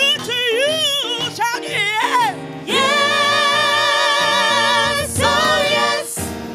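A woman singing gospel into a microphone. She sings quick, winding vocal runs, then holds one long note with a wide vibrato from about three seconds in to about five, then goes back to runs, over sustained backing chords.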